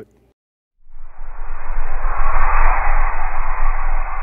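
A loud, steady rushing noise with a deep rumble under it, starting about a second in after a short silence: a whoosh-and-rumble sound effect for an animated team-logo title card.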